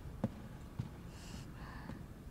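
Quiet room tone, with a short sharp click about a quarter second in, a fainter knock just before the middle, and a soft rustle later on.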